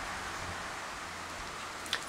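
Steady outdoor background hiss with no distinct sounds, and a faint click just before the end.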